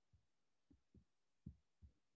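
Near silence on a video-call line, broken by about five faint, short low thumps, the clearest about one and a half seconds in.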